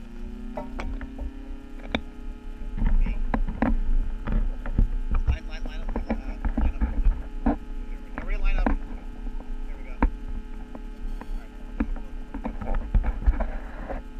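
Steady electrical hum made of several held tones, which rise slightly in pitch at the start and then hold level. Over it come irregular sharp knocks and clicks and a low rumble on the microphone.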